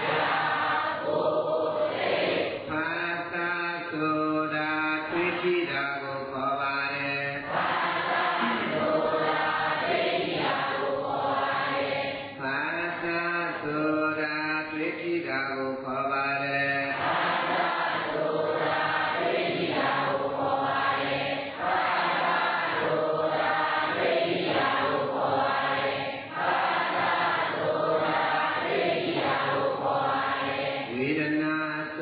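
Theravada Buddhist chanting: a voice reciting in a sustained, melodic intonation, held notes joined by short pauses for breath.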